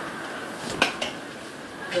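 A single sharp clink, like a small hard object knocking, a little under a second in, over a steady low background hiss.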